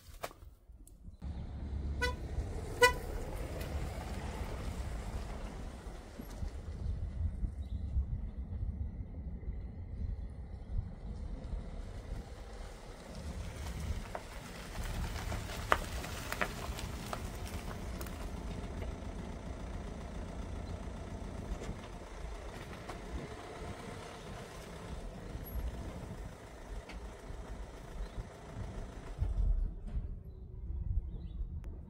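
Two short toots of a car horn about two seconds in, then a Citroën Berlingo van's engine running steadily as the van manoeuvres slowly, reversing towards the camera near the end.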